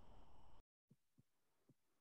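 Near silence: faint room tone that cuts out completely for a moment, followed by a few faint low taps.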